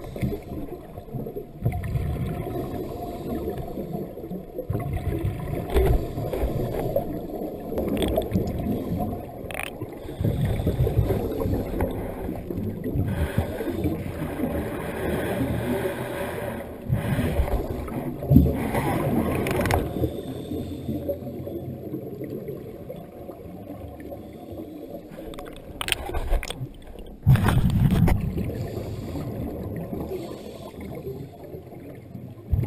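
Muffled underwater sound of scuba divers' exhaled bubbles gurgling, in irregular surges a few seconds long over a low rumble of water.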